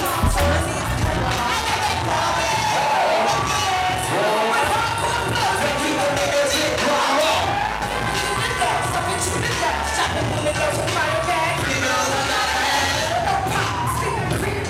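Live hip hop performance: a woman's vocal into a microphone over a loud backing beat, with crowd noise underneath.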